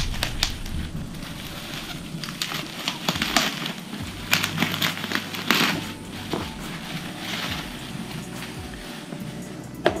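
Plastic bubble wrap crinkling and crackling in irregular bursts as it is handled and pulled off a product box.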